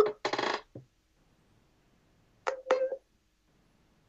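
Call audio breaking up on a poor connection: a few short, clipped fragments with a metallic ringing tone, early on and again about two and a half seconds in, cut off abruptly into dead silence.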